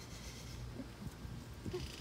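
A kitten hissing briefly twice, at the start and again near the end, while wrestling with a hand.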